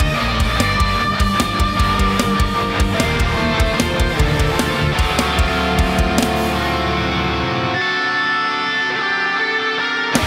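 High-gain electric guitar in D standard, an Ibanez with a DiMarzio Tone Zone bridge pickup, playing a fast-picked, chugging metalcore riff. About three-quarters of the way through, the low chugging drops away and higher notes are left ringing out.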